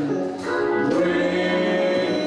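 Gospel singing by a small group of singers on microphones, with long held notes and a brief drop in level about a third of a second in.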